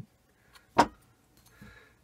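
A single sharp click near the middle, with a fainter tick just before it, as the metal float arm of an old ball valve is worked in its pivot slot.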